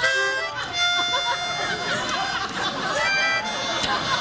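Harmonica played in held chords, the notes shifting every second or so with some wavering between them.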